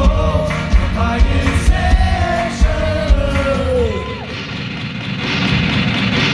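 Live pop-rock band playing through a concert PA, heard from the crowd: a sung vocal melody over drums and bass. About four seconds in the drums drop away for a brief quieter moment before the full band swells back.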